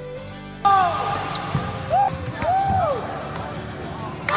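Guitar music that cuts off about half a second in, giving way to the live sound of an indoor volleyball game: short squeaks of sneakers on the gym floor, a few knocks of the ball being hit, and players' voices.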